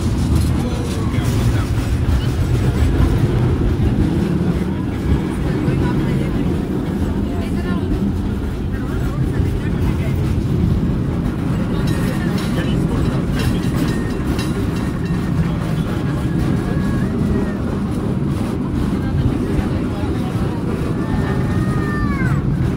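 Steady low rumble of a San Francisco cable car running along its track, heard on board, with passengers talking over it.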